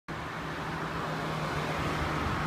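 Street traffic with a steady low engine hum as a van drives past.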